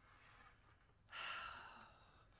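A single breathy sigh, an audible exhale, starting about a second in and fading away, against otherwise near silence.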